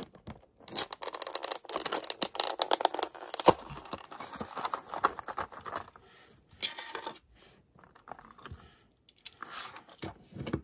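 A plastic blister pack being torn open from its cardboard backing card: a stretch of crackling, tearing plastic and card over the first few seconds, with one sharp crack, then scattered rustles of the loose plastic.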